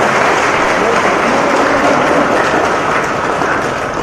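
A crowd applauding steadily in a dense wash of clapping, with voices mixed in. It cuts off abruptly at the end.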